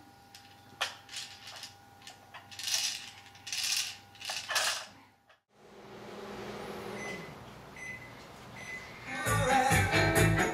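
A toy train's electronic children's song stops, leaving a mostly quiet stretch with a few short plastic rattles, then the song plays again loudly near the end.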